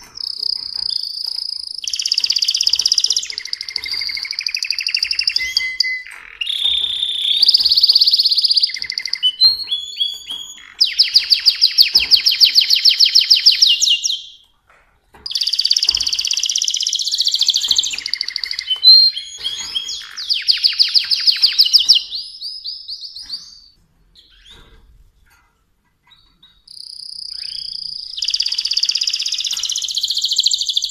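Mosaic canary singing a long rolling song of high whistled notes, gliding tones and fast trills. The song pauses for a few seconds near the end, then starts again.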